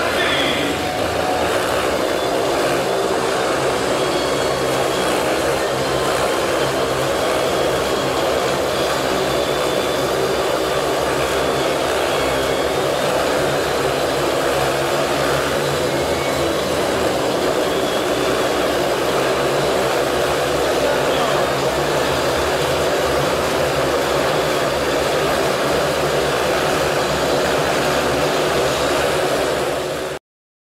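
Motorcycle engines running steadily at speed as they circle inside a steel-mesh globe of death, a continuous engine drone that cuts off at the end.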